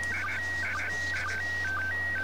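Slow-scan TV (SSTV) image signal: an electronic whistle-like tone that steps between a higher and a lower pitch several times a second, with short dips lower still, as a picture is sent. A faint steady low hum lies under it.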